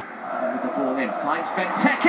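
Speech only: a voice talking quietly, below the level of the louder talk on either side.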